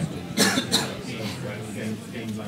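Someone coughing twice in quick succession, about a third of a second apart, over a low murmur of voices in the room.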